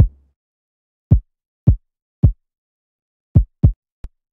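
Five separate 808-style electronic drum hits played back in FL Studio, each a short deep thud with a quick downward pitch drop. Three come about half a second apart and two close together near the end. A low 808 bass note fades out just at the start.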